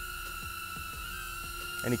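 Steady hum of a hovering HoverAir X1 Pro Max pocket drone's propellers, thinned by noise reduction to a few held tones whose pitch wavers briefly about halfway.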